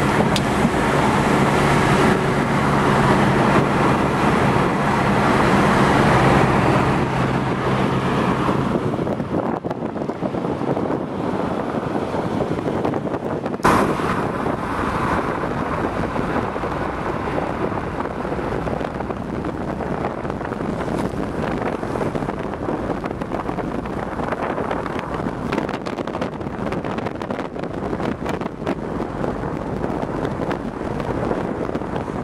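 Car driving along a country road, heard from inside the cabin: a steady engine hum with road and wind noise. The hum fades after about nine seconds, leaving steady road noise, with one sharp knock about fourteen seconds in.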